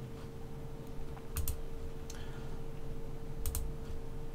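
Two computer mouse clicks about two seconds apart, each a quick double tick, over a faint steady hum.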